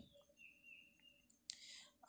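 Near silence: room tone, with a faint click about a second in and a brief soft hiss near the end.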